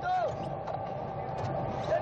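A steady engine drone with a constant faint whine running through it, after a voice trails off at the start.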